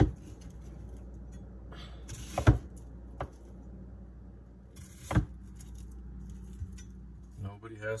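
Chef's knife cutting through a red onion and knocking on an end-grain wooden cutting board: a few scattered sharp knocks, two of them louder, about two and a half and five seconds in, over a steady low room hum.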